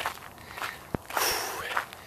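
Footsteps of a runner on a dirt road, with a long, hard exhale of breath from the tired runner in the second half and a single sharp click about halfway through.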